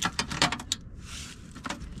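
Metal clicks and clinks of a small butane gas canister being handled and fitted into a portable cassette stove: a quick series in the first second, then another click near the end.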